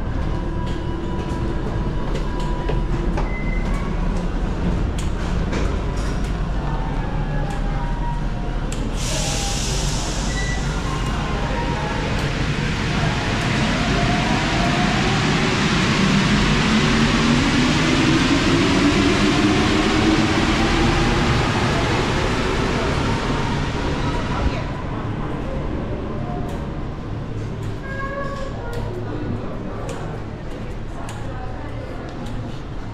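A Paris Métro Line 1 rubber-tyred train pulling out of the station: a loud rolling hiss sets in about a third of the way in, the motors' whine climbs in pitch as it gathers speed, and the hiss drops away about five seconds before the end, leaving a low rumble and the bustle of the platform.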